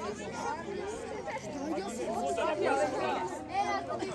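Several overlapping voices of football players and coaches calling out on the pitch, indistinct and running over each other.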